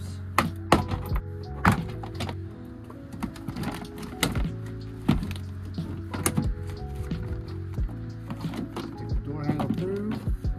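Plastic retaining clips of a 2001–2008 Honda Fit door panel popping loose as a trim tool pries the panel off, heard as several sharp snaps, most in the first two seconds and a few more around the middle. Background music with a steady low beat runs underneath.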